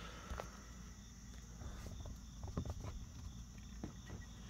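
A few faint, scattered clicks of a hand handling the plastic-cased screen module of a Ford Police Interceptor Sedan's dash radio, against low steady background noise.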